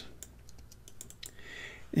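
A run of about ten light, irregular clicks from a computer's mouse and keyboard as the user works at the desk.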